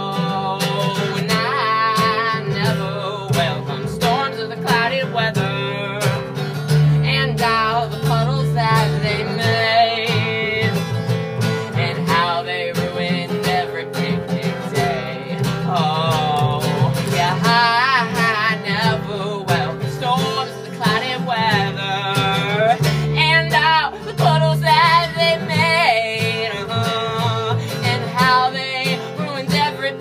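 Folk song played live on strummed acoustic guitar and plucked upright double bass, with a man singing over them.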